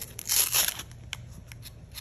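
A hook-and-loop sanding disc being peeled off a random orbital sander's pad: one short ripping rasp about half a second long, then a couple of faint ticks.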